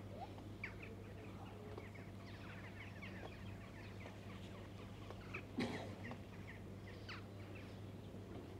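Faint bird chirps and twitters scattered throughout, over a steady low hum, with a single sharp knock about five and a half seconds in.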